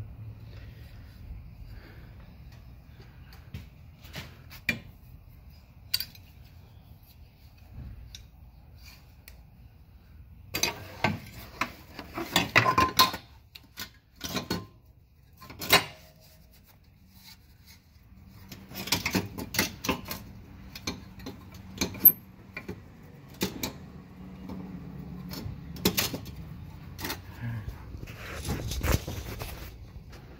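Scattered metallic clinks and knocks of hand tools and parts being handled under a car during a motor mount replacement, coming in short clusters with quieter gaps between, over a faint low hum.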